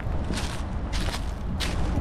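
Footsteps on grass and dry leaves: three rustling steps about half a second apart, over a steady low rumble.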